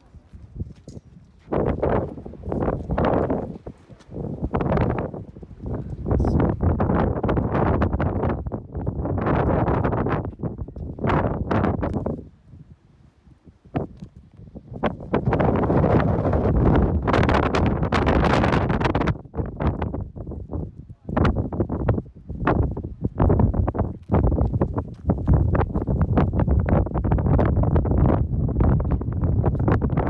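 Wind buffeting the microphone in irregular gusts, with a lull about twelve seconds in.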